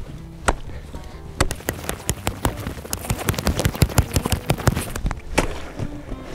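Axe chopping a hole through lake ice: a quick, irregular series of sharp strikes on the ice, coming faster after the first second or so, over background music.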